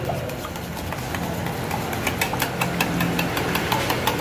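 Metal spoon stirring gravy in a stainless steel mug, clinking quickly against the inside of the cup at about four clinks a second from about a second in. A steady low hum runs underneath.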